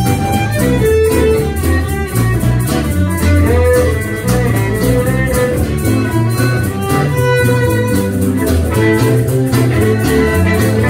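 Live fiddle playing a melody in long bowed notes with slides, over rhythmic plucked and strummed acoustic string accompaniment.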